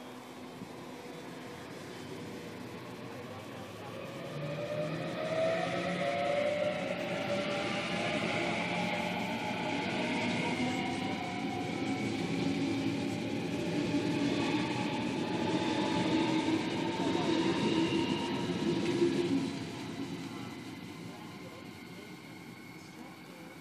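Sydney Trains Waratah double-deck electric train departing and running past close by, with its traction motor whine rising in pitch as it accelerates, along with wheel and rail noise. It builds from about four seconds in and fades away near the end.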